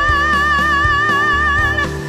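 A female singer holding one long high note with wide, even vibrato over a ballad's instrumental backing, the note ending near the end.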